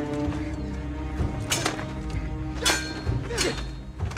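A TV drama soundtrack: a sustained orchestral score, cut across by three sharp metallic hits, blades clashing in a sword fight.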